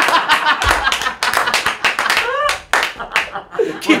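Men laughing hard, with several quick hand claps during the first couple of seconds.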